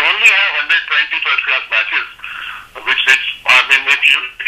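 Speech only: one voice talking, thin and narrow-sounding as if over a telephone line.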